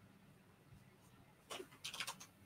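Near silence: room tone with a faint low hum, broken about one and a half seconds in by two short, soft puffs of sound.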